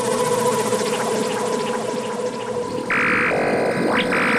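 Dark psytrance track in a stripped-down passage without the kick drum and bassline: a steady synth drone under busy glitchy effects. Near the end, two loud buzzy synth tones and a quick rising sweep come in.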